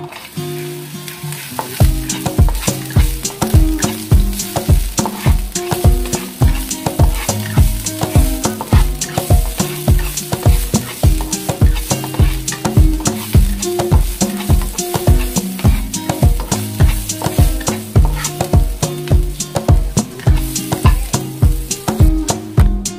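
Diced onion sizzling in hot oil in a nonstick wok as it is tipped in and stirred with a spatula. Background music with a steady beat comes in about two seconds in and runs over it.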